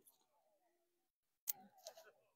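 Near silence, with a single faint click about one and a half seconds in, followed by faint voice sounds.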